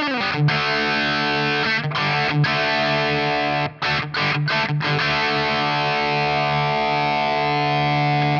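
Electric guitar played through the NUX Trident's modeled Marshall JCM800 amp with its Keely-style K Comp compressor engaged. The compressor's clipping control is being turned up, so it adds drive. Distorted chords are strummed and let ring, with a few quick choked stops about halfway through, then a long sustained chord.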